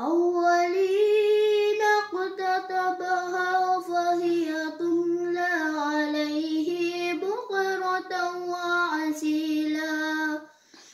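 A boy's voice reciting the Quran in Arabic in measured, melodic tartil: one long chanted phrase held mostly on one steady pitch with small melodic turns and a few short breaks.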